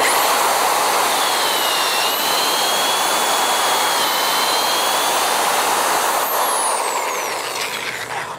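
Corded electric drill boring a hole into a hardwood log: a steady motor whine whose pitch sags briefly about two and four seconds in as the bit bites, then winds down falling in pitch near the end as the drill is let off.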